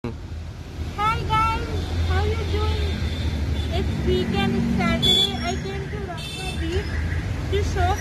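Steady low street-traffic rumble with voices talking over it.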